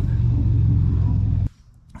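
A steady low engine drone that cuts off abruptly about one and a half seconds in.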